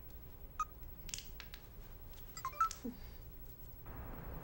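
Faint taps and short electronic beeps from a mobile phone being operated, a few about half a second in and more around two and a half seconds in. A steady hiss begins just before the end.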